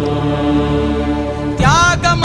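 Film score of chant-like music: a low drone held on steady notes. About one and a half seconds in, a wailing voice enters, sliding up and down in pitch.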